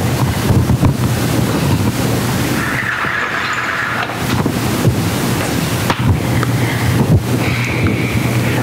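Steady rushing background noise with a constant low hum, with a few soft knocks.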